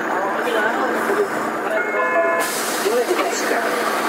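Several people talking over the steady running of a Karosa B931E city bus, with a short beep about two seconds in followed by a hiss.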